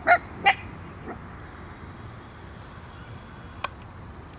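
A dog barking: two short, high-pitched barks in quick succession at the start, then a fainter third about a second in. A single sharp click near the end.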